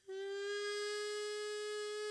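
Hichiriki, a short Japanese double-reed pipe, sounding one long held note that slides slightly up into pitch as it starts, then holds steady.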